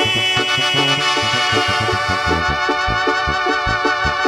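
Live band playing an instrumental passage: sustained keyboard lines held over a steady bass and drum beat.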